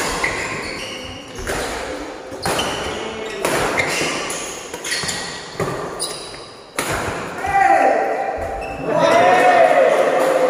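Badminton rally: rackets strike the shuttlecock about once a second, each hit a sharp crack that echoes in the hall. About three-quarters of the way in, the hits stop and loud shouting voices take over as the point ends.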